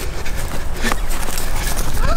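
People running, their footsteps heard over a steady low rumble, with a couple of sharp clicks just under a second in.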